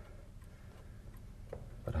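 A mantel clock ticking quietly.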